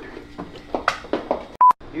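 A short, loud electronic beep at one steady pitch, about one and a half seconds in, cut in with dead silence on either side. Before it come faint scattered clicks and knocks.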